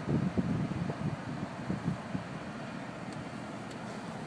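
Wind buffeting the microphone in irregular low rumbling gusts over a steady hiss, strongest in the first two seconds and easing after.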